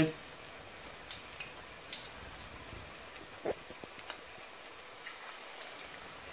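Onion bhajis frying in a pan of hot oil: a low, steady sizzle with scattered small pops and crackles, and one louder tap about three and a half seconds in.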